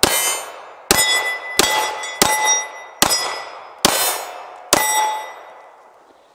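Seven shots from a Kahr ST9 9mm pistol, fired a little under a second apart, each followed by the ringing clang of a steel target being hit. The last ring dies away over the final second.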